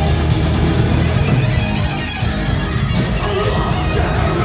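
Thrash metal band playing live and loud: electric guitars over bass and drums, with a sharp accent about three seconds in.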